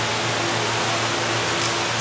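Steady rushing background noise with a constant low hum underneath.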